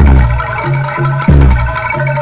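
Live jaranan campursari music: mallet-struck gamelan-style metal keys play a repeating melody over a deep beat that falls at the start and again about 1.3 seconds in.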